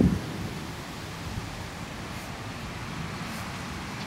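Steady, even rush of wind ahead of a storm front, with nothing standing out of it.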